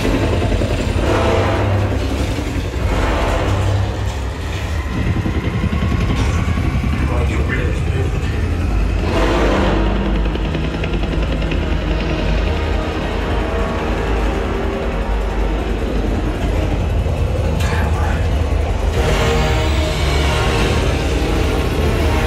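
A film soundtrack played loud through an Ascendo 7.2.4 Atmos speaker system with subwoofers, heard in the room. A helicopter's rotor and engine sound and a deep rumble run under a dramatic music score, with snatches of dialogue.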